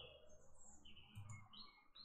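Near silence with faint bird chirps: a string of short, high notes at varying pitches.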